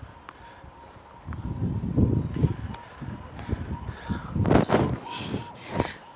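Tennis rally on an outdoor hard court: sharp pops of racket striking ball, spaced a second or so apart, among players' grunts and low rumbling movement, with a louder burst about four and a half seconds in.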